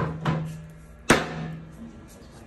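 Three sharp metallic clanks from the metal frame of a wheeled long-length imaging stand as it is pushed across the floor. The last clank is the loudest, and a low ringing tone hangs on after the first until about a second and a half in.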